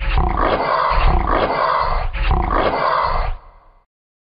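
Dinosaur roar sound effect: a loud roar that cuts in suddenly, swells about four times, and fades out after a little over three seconds.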